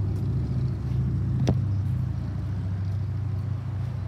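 Steady low hum of an idling engine, with one sharp click about a second and a half in.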